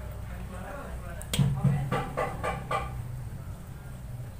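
A bird calling in a quick run of about five loud calls, starting sharply about a second and a half in and stopping about a second and a half later, over a steady low background hum.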